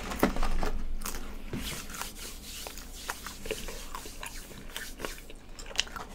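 Crunchy biting and chewing of a Mexican pizza's crisp fried tortilla layers: a run of short, sharp crunches.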